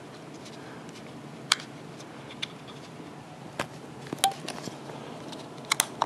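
A few sharp small clicks and taps of a plastic handheld radio being handled, spaced a second or so apart with a quick cluster near the end, over a steady low hiss.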